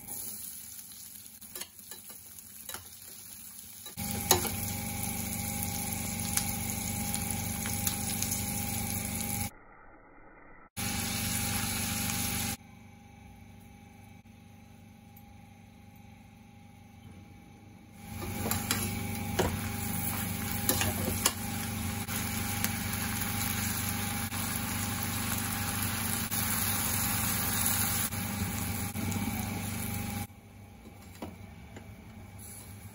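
Onions, tomatoes and other vegetables frying in hot oil in a stainless steel pan: a steady sizzle that drops away and returns several times, with occasional light clicks against the pan.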